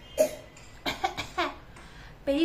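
A woman's voice in four short bursts within about a second and a half, between quiet gaps.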